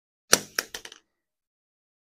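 Corrugated plastic RV sewer hose being stretched out across a hard floor: a quick run of about five sharp plastic crackles and clacks, over in under a second.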